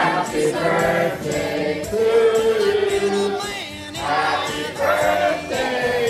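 Music with a group of voices singing, choir-like, on long held notes.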